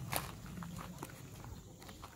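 A few faint, irregular knocks, likely steps, over a low steady outdoor background.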